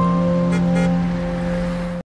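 Closing theme music of a TV traffic bulletin: a held low note under a few sustained higher notes, with two brief bright shimmering accents about half a second and just under a second in. It cuts off abruptly at the end.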